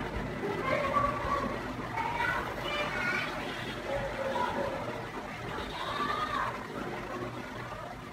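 Quiet speech in the room: soft voices, with no other distinct sound.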